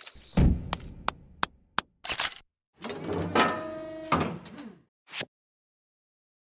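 Sound effects for an animated logo: a short falling whistle, then a string of sharp knocks and taps, then a pitched passage with a tone sliding down. A last short tap comes a little after five seconds, and then the sound stops.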